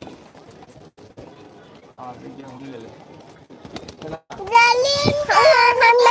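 A child's high-pitched voice starts about four seconds in, with long drawn-out, wavering sounds, after a few seconds of quieter background noise.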